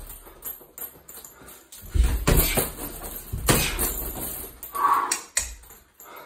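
Boxing-gloved punches landing on a hanging heavy bag: about four dull thuds starting around two seconds in, with quieter gaps between the blows.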